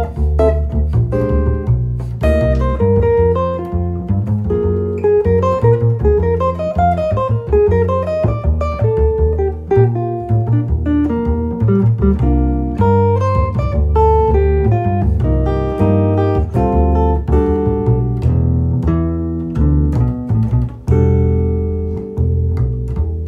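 Jazz guitar and double bass duo: a Gibson ES-330 hollow-body electric guitar plays melodic lines and chords over a plucked Kolstein upright double bass.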